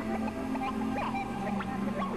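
Experimental electronic music: a steady low synthesizer drone under scattered short blips and brief chirps that glide in pitch.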